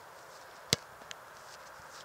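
A soccer ball kicked once: a single sharp thud about three quarters of a second in, then a faint click shortly after.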